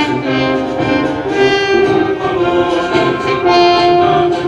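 Orchestral music with brass and strings playing sustained, slow-moving notes.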